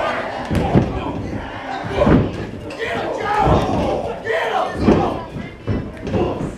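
Crowd shouting and yelling over a wrestling brawl, with several thuds of strikes and bodies landing in the ring, the loudest about two seconds in.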